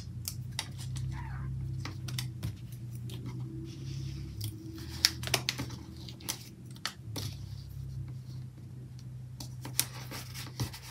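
Light clicks and taps of fingers and fingernails on paper as a planner sticker is peeled and pressed down onto the page, scattered irregularly over a steady low hum.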